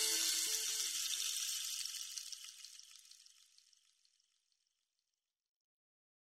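The last chord of an electronic pop song ringing out in reverb, with a short repeating echoed note. It fades away over about two and a half seconds, then silence.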